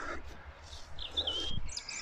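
A small songbird twittering: a short, high, wavering phrase starting about a second in, with more brief chirps near the end.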